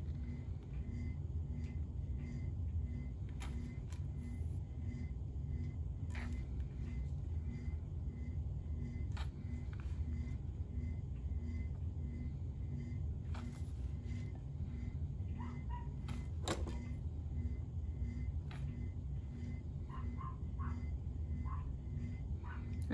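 Light clicks and taps from a plastic paint bottle and a resin tumbler being handled, scattered over a steady low hum with a faint regular pulse.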